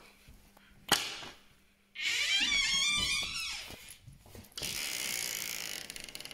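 A door being opened: a sharp latch click about a second in, then a wavering hinge creak lasting about a second and a half. A steady hiss follows near the end.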